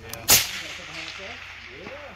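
A single rifle shot about a third of a second in: one sharp crack, followed by an echo that fades over about a second, fired at a long-range steel target at night.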